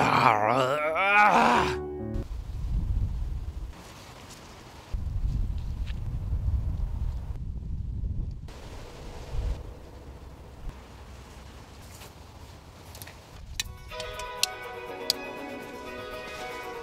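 A man laughs briefly over background piano music, then the music drops out and a low rumble of wind on the microphone runs for about ten seconds, with a few small knocks; the piano music comes back near the end.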